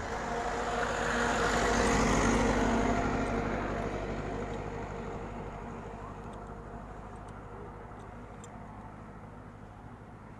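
A motor vehicle passing by on the road, growing louder to about two seconds in and then slowly fading away.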